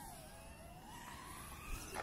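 Brushless motors and props of a small 85 mm FPV whoop drone whining in flight. The pitch dips and then climbs again as the throttle changes, and the sound grows a little fainter early on as the drone moves off.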